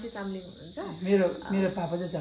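A person speaking in conversation, with a steady high-pitched whine running underneath.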